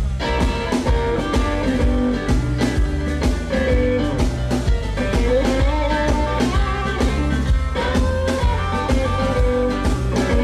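Live electric blues band playing: an electric guitar lead with bent notes over bass, drums and keyboards, with a steady beat.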